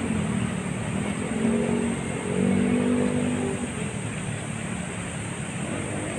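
Road traffic: a vehicle engine running nearby, its hum swelling for a moment about two seconds in, over a steady street noise.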